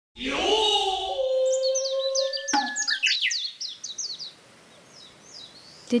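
A drawn-out kabuki-style shout (kakegoe) that falls in pitch and then holds a long note, cut by a single sharp clack about two and a half seconds in. Birds chirp over it in quick downward sweeps, fading out after about four seconds.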